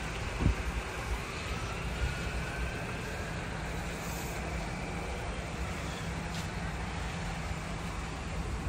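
Steady low hum of a car engine idling, under light outdoor traffic noise, with a faint rising whine about a second in.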